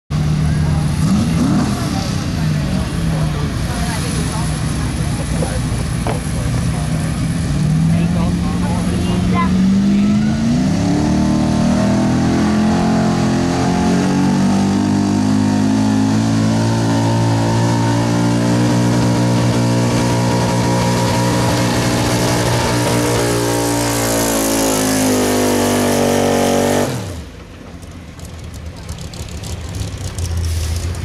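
1985 Chevrolet pickup's engine working at full throttle under load while pulling a weight-transfer sled. The revs climb steadily for a few seconds, hold at a high, steady note, then drop away suddenly near the end as the truck stops and the pull ends.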